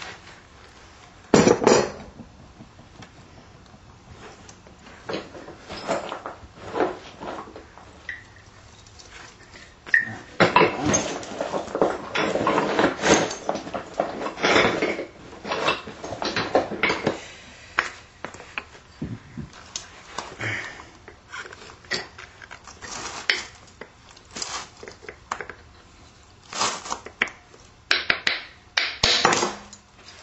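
Stone Clovis preform being worked with a small hand-held punch: irregular clicks and short scrapes of the punch tip on the flint edge as a striking platform is set up. There is a sharp crack about a second and a half in, a dense stretch of scraping in the middle, and a few sharp strikes near the end.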